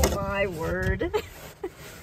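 A woman's voice speaking or exclaiming briefly in the first second, words the recogniser did not catch, followed by a quieter stretch with a single small click.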